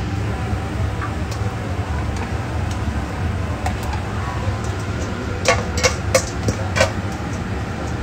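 Chicken wings being tossed in sauce in a stainless steel mixing bowl: a quick run of about six knocks and clatters a little past the middle, over a steady low hum.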